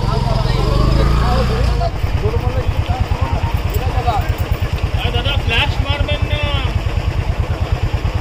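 Motorcycle engine running close by. About two seconds in, its steady low rumble gives way to an even idle beat of roughly ten pulses a second, with people's voices over it.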